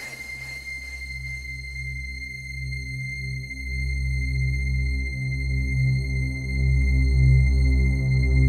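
Hard trance track in a breakdown: the beat drops away at the start, leaving deep pulsing synth bass under a steady high synth tone. It grows louder toward the end.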